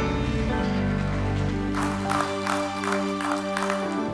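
Keyboard playing soft sustained chords, the chord changing about half a second in. In the second half the congregation applauds and cheers in several bursts.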